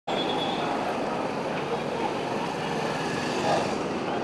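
Steady street noise of traffic with the indistinct voices of a crowd mixed in.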